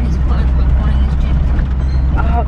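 Steady low rumble of a moving car's engine and road noise, heard from inside the cabin, with faint voices over it.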